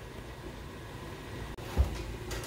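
Quiet room tone, a steady low hum, with a faint click and then a short, soft low thump near the end.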